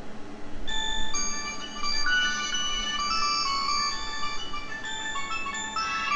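Telephone ringing with a melodic electronic ringtone, a tinkling tune of clear notes that starts about a second in and keeps playing.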